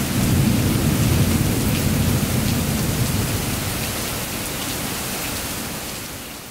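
Heavy rain pouring onto a lawn and concrete, with drops striking close by, and a low rumble of thunder that is strongest in the first half and dies away.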